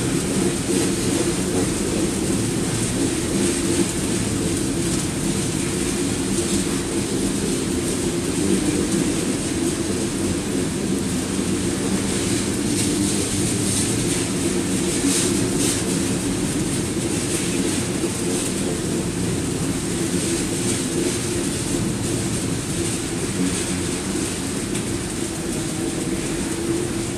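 Loaded covered hopper cars of a sand train rolling past at a steady speed: a continuous rumble and clatter of steel wheels on rail.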